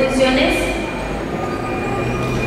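A voice speaking briefly at the start, then a steady hum made of several held tones over background noise.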